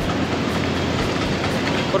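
Steady rushing noise of sea wind on the microphone, mixed with surf and road traffic along a seafront, with no distinct event standing out.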